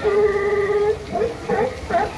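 A voice holding one long, steady, level call for about a second, then a few short, choppy syllables.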